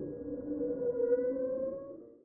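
Eerie, sustained synthesized tones, a spooky ghost-style sound effect, with one tone gliding slowly upward before the whole sound fades out at the end.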